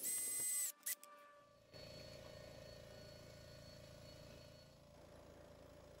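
Dremel rotary tool running with a high whine on a metal brake handle, stopping under a second in, followed by a single click. Then only faint steady room tone with a weak hum.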